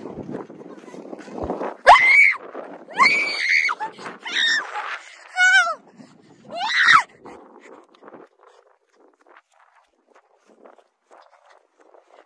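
A child screaming in about five short, high-pitched shrieks over the first seven seconds, then only faint scuffing sounds.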